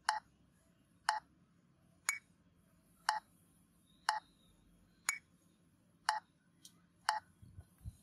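Metronome clicking at about one beat a second in a ternary (three-beat) pattern. Every third click is brighter and higher, marking the strong first beat, and each is followed by two duller weak beats.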